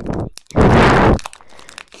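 Foil booster-pack wrapper crinkling and crunching in the hands as it is gripped and pulled at, still not tearing open. There is a short burst at the start and a louder, longer one about half a second in.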